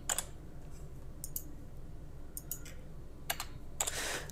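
Keystrokes on a computer keyboard: a few scattered clicks, some in quick pairs, over a low steady hum.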